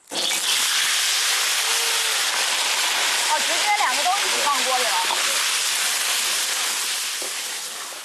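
Crayfish and river snails hitting hot oil in a wok: loud sizzling that starts suddenly and slowly dies down.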